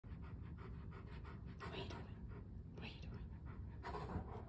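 An Akbash–Great Pyrenees puppy panting in quick, even breaths, with a couple of louder breaths in the middle.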